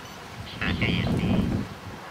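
A brief gust of wind buffeting the microphone, a low rumbling noise that swells about half a second in and dies away after about a second.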